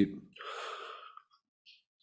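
A man's audible in-breath close to a desk microphone, lasting just under a second, followed by a faint click.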